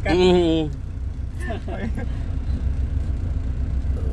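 FAW JH6 truck's diesel engine idling, a low steady rumble heard from inside the cab, with a short word spoken near the start.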